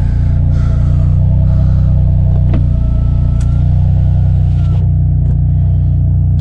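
BMW M4 Competition's twin-turbo inline-six running steadily at low revs, a deep, even engine drone.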